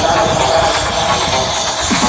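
Electronic dance music from a DJ set played loud over a festival sound system and heard from within the crowd: a sustained synth passage with no kick drum. Deep, falling kick-drum thumps come back in just at the end.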